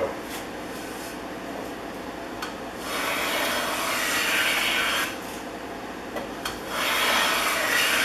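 Stanley No. 130 double-end block plane, its iron sharpened, cutting shavings from a wooden board in two long strokes about three and seven seconds in, each lasting about two seconds, with quieter rasping before them. The plane is cutting well, producing nice shavings.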